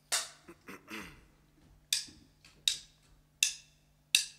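A film clapperboard snaps shut once, with a few small knocks after it. Then a drummer counts the band in with sharp, evenly spaced stick clicks, about one every three-quarters of a second.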